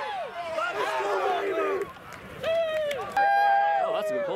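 Sideline players shouting and cheering, several voices overlapping, with a brief lull halfway through and one long held yell near the end.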